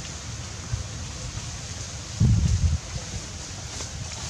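Wind on the microphone: a steady low rumble with a light hiss, and a louder low buffet lasting about half a second a little past halfway.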